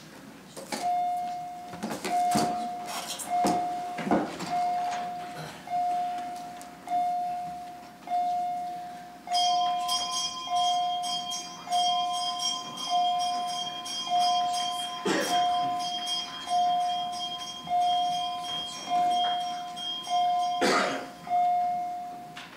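A division bell rings to call members in for a standing vote: one pitched note struck about every second, each stroke dying away. A steady higher ringing tone joins about nine seconds in and stops near the end, and a few knocks sound along the way.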